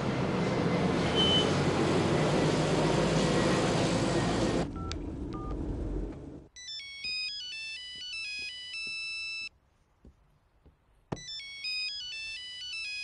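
A mobile phone ringing with a melodic ringtone of stepped electronic notes, in two runs of about three and two seconds with a short gap between: an incoming call. Before it, a loud steady rushing noise fills the first four or so seconds.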